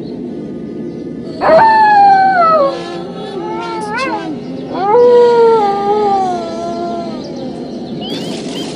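Two long canine howls, each falling in pitch: one starts about a second and a half in, the other near five seconds. A short rising cry comes between them, all over a steady low music drone.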